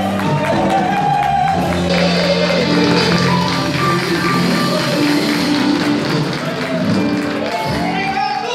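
Small live band of electric and acoustic guitars with a drum kit playing the closing bars of a song, with a male singer's voice heard faintly. Audience clapping starts near the end.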